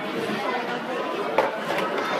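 Indistinct chatter of several people talking in a busy shop, with one sharp click a little after halfway.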